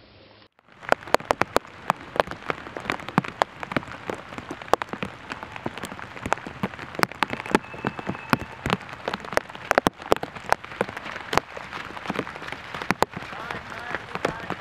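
Rain falling, with irregular sharp drop hits close to the microphone, a few a second, over a steady patter.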